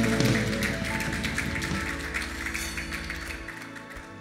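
A live worship band's song dying away: held chords fade out steadily, with scattered light taps over them.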